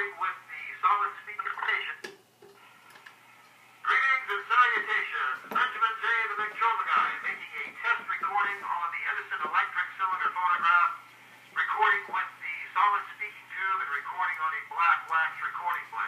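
A man's voice played back acoustically from a freshly cut, lead-free black wax cylinder on an Edison electric cylinder phonograph, through a Model C reproducer and a witch's hat horn. It sounds thin and telephone-like, cut off at the top and bottom, with pauses about 2 seconds and 11 seconds in. This is a test of how much surface noise the shaved, formerly moldy blank still has.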